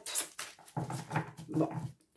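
A deck of oracle cards being shuffled by hand: scattered soft slaps and clicks of the cards. From about a second in, a low, steady pitched sound runs under the shuffling until just before the end.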